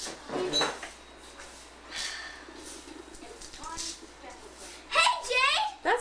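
Indistinct speech: children's voices chattering in a small room, with a child's voice rising in pitch near the end.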